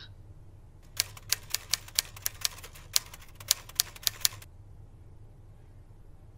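Typing: a quick, uneven run of about fifteen sharp key clicks lasting a few seconds, then it stops.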